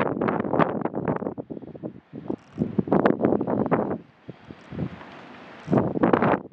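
Gusty wind buffeting the microphone in irregular bursts, with a rustle. It eases to a faint hiss for a second and a half about four seconds in, then gusts again.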